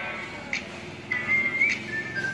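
A high whistled melody of held notes over music with a sharp beat about once a second.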